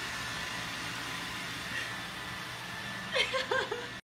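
Robot vacuum running with a steady hum, then a person laughing a few times near the end.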